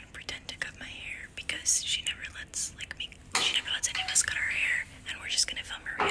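A young woman whispering close to the microphone, in continuous hushed speech.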